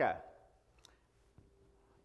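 The fading end of a man's spoken "OK" through a church PA. Then quiet room tone with a few faint, short clicks.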